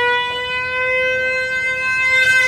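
Cello bowed on one long, high held note, its pitch bending slightly upward about half a second in; a slow drone.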